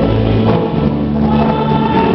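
Gospel worship song: a group of voices singing together over steady instrumental backing with a strong bass.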